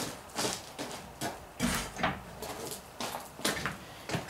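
A shed door being shut: a string of irregular knocks and clunks.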